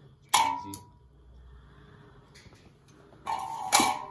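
A square steel electrical box set down by the robot's gripper lands with a metallic clank that rings briefly. Near the end comes a second, louder burst of metal clatter, as the gripper works among the steel boxes.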